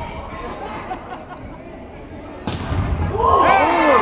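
A volleyball is struck sharply once about two and a half seconds in, the hit ringing in the large gym. Players and spectators then start shouting and cheering, getting louder toward the end.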